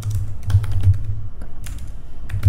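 Computer keyboard typing: a quick, irregular run of keystrokes.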